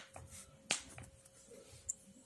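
Pen writing numbers on paper: a few sharp ticks as the pen tip touches down and lifts, the loudest about two-thirds of a second in.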